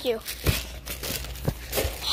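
Plastic wrapping on packs of paper towels crinkling as the phone brushes along them, with a few sharp knocks.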